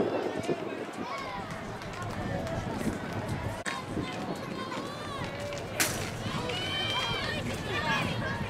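Several voices calling out and cheering, some high-pitched, with no clear words, and one sharp knock about six seconds in.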